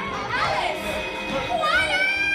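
Several voices singing a stage number over backing music, rising into a long held note near the end.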